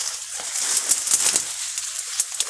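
Leaves and twigs rustling and crackling as someone pushes through dense undergrowth.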